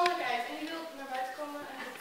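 Speech only: girls' voices speaking dialogue.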